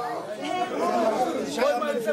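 Several people talking over one another at once: overlapping chatter of a group of voices.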